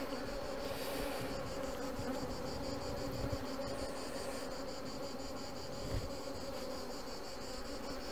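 Honeybee colony buzzing around a comb frame lifted out of an open hive, a steady even hum.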